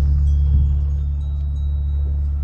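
Film score drone: a loud, steady low hum with faint, thin, high ringing tones held above it.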